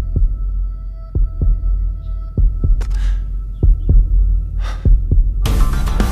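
Tense soundtrack sound design: a low drone under doubled heartbeat-like thumps about once a second, with a faint steady high hum. Two short whooshes pass in the middle, and about five and a half seconds in a loud burst of action music cuts in.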